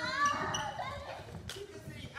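Sneakers squeaking on a wooden gymnasium floor, with a sharp single hit about one and a half seconds in.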